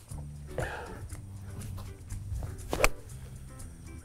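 Background music, with a single sharp click about three quarters of the way through as a golf iron strikes the ball.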